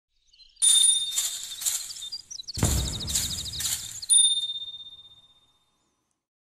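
Bell-like chimes struck several times with a long high ringing tone. About halfway through come a low rumble and a fast run of ticks. A last chime then rings out and fades away.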